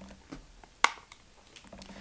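A few light clicks and taps of objects being handled at a table, with one sharp click a little under a second in.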